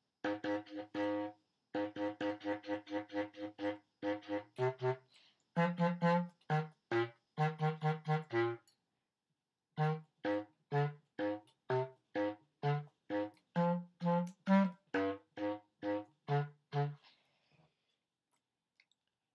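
Bass clarinet playing a long run of short, detached low notes. There is a pause of about a second midway, and the notes stop shortly before the end.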